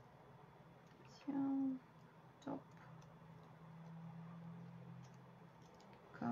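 A woman's brief hum-like vocal sound about a second in, and a shorter one soon after, with faint small clicks.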